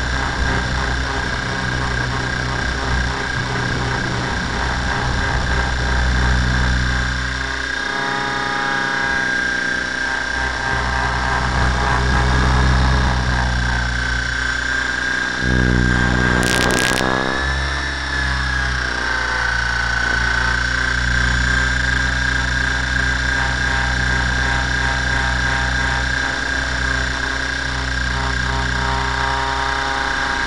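Align T-Rex 700 radio-controlled helicopter in flight, heard from a camera mounted on its tail boom: a steady high whine from the drive and rotors over a low rumble of rotor wash on the microphone, the pitch dipping slightly about two-thirds of the way through. A brief crackle comes about halfway.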